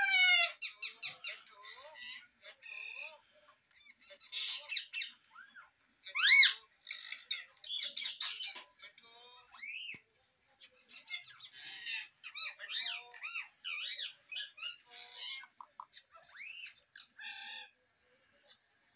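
Parrot squawking and chirping: a long run of short calls, clicks and rising-and-falling whistles, the loudest a sharp whistle about six seconds in.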